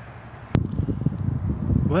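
A sharp click about half a second in, then wind buffeting the phone's microphone in uneven low rumbling gusts.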